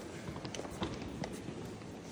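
Footsteps on a stone floor, a handful of sharp shoe clicks, over a steady low background hum of a large church interior.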